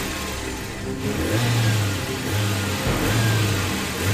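A car engine running and revving, getting louder from about a second in.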